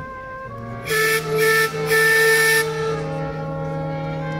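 Three blasts of a boat's whistle, the third the longest, over background music with steady held chords.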